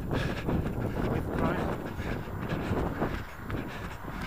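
Wind buffeting the microphone of a body-worn camera on the move, a rough, fluctuating rumble.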